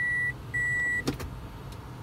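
Car reverse-gear warning beeper sounding two steady high-pitched beeps about half a second each, signalling that reverse is engaged. The beeping stops about a second in, followed by a short click as the car comes out of reverse.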